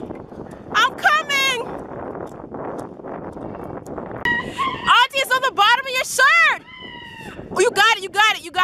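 A person's high, wordless vocalizing in bouts of rising and falling pitch, like laughing or whooping, over a steady rush of wind noise from riding a bicycle.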